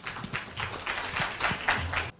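Audience applauding: many people clapping together.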